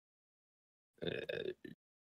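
About a second of dead silence, then a single soft, hesitant 'uh' from a man's voice.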